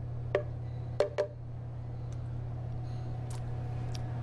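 A spoon knocking against the plastic jar of a blender three times in the first second and a half, each a short hollow clack. A steady low hum continues underneath.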